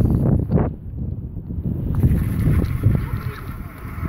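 Wind buffeting a phone's microphone on a bicycle coasting downhill: a heavy, rough low rumble that dips briefly about a second in and then returns.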